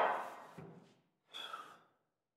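A person's short, breathy sigh about a second and a half in.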